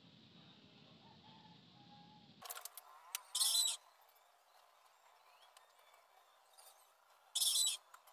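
Two short, high-pitched bird chirps about four seconds apart, over a few light clicks of a disc brake rotor and its bolts being handled on a bicycle wheel hub.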